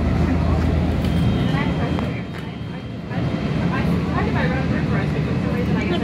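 Running noise inside a SMART diesel multiple-unit passenger train: a steady heavy rumble in a tunnel, easing off a little about two seconds in.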